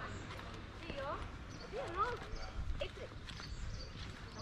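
Indistinct voices, with a couple of rising and falling calls about one and two seconds in, over street background noise and light footsteps on pavement.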